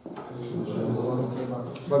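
A man's voice speaking quietly in Russian, softer than the surrounding lecture, with louder speech picking up right at the end.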